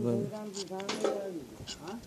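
A man's voice making drawn-out, wordless hesitation sounds, with a few light clicks as metal pump parts are handled.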